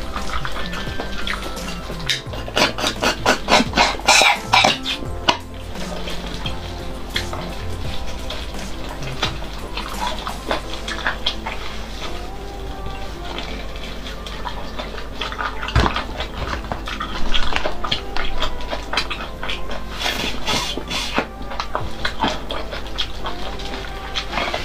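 Close-miked slurping, sucking and wet mouth smacks as marrow is sucked out of a boiled bone, loudest in bursts a few seconds in and again near the end, over background music.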